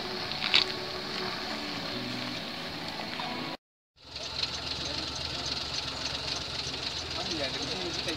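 A truck engine idling steadily, heard from inside the cab, with faint voices around it. Before that, low murmured voices outdoors, broken off by a brief dropout of all sound about three and a half seconds in.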